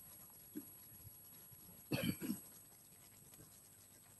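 A single short cough about two seconds in, in an otherwise near-silent pause.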